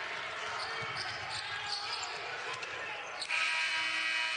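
Basketball dribbled on a hardwood court. A little over three seconds in, the arena's end-of-period horn starts: a loud, steady buzz that ends the first half.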